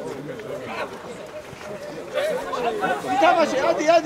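Several voices calling and shouting over one another, getting louder from about halfway.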